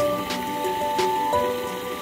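Background music: a melody of held notes stepping from one pitch to the next every half second or so, with a few light clicks.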